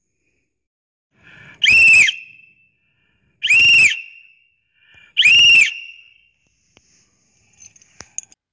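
Three loud, shrill whistle blasts blown by a person, each under a second long and about a second and a half apart, the pitch rising and then dropping slightly in each.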